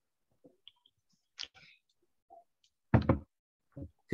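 Faint, scattered small noises, then a short, loud knock about three seconds in.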